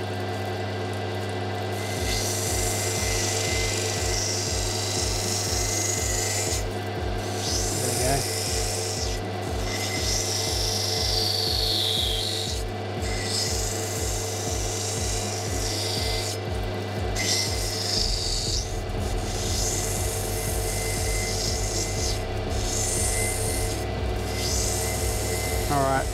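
A piece of opal being ground by hand against a water-fed lapidary grinding wheel: a steady wet scraping hiss over the machine's running hum, with a regular low throb. The stone is being pushed hard to take material off and shape it toward the template outline.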